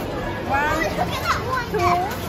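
Several short, high-pitched voices exclaiming and chattering over steady low background noise.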